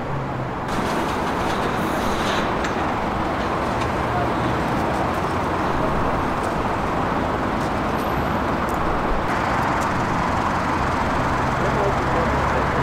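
Steady outdoor street noise of road traffic, with a low engine hum underneath.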